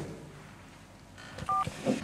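A mobile phone's single short two-tone beep about one and a half seconds in, the key tone of a call being ended.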